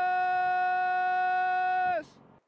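A cow bawling: one long, steady, high-pitched call that drops in pitch as it ends.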